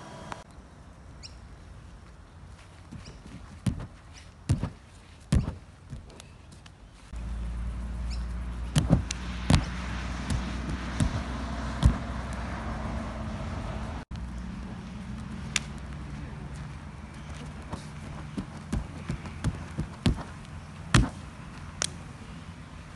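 Irregular thuds of a gymnast landing and rebounding on an inflatable air track while tumbling, with a steady low hum underneath from about a third of the way in.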